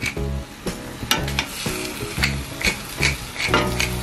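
Wooden spatula stirring and scraping chicken pieces in a stainless steel pot, in repeated strokes about two or three a second, over the sizzle of the chicken sautéing.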